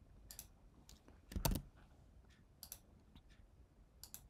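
A few scattered clicks of a computer mouse and keyboard, the loudest about a second and a half in.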